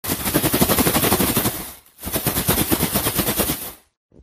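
A plastic bag of fried starch toothpick snacks being shaken hard, crinkling and rattling in quick, even pulses. It comes in two bursts with a brief break just before two seconds, and cuts off near the end.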